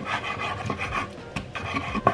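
Kitchen knife slicing through raw pork on a wooden cutting board: a steady rasping, sawing sound as the blade draws through the meat, with a couple of sharp knocks of the blade on the board.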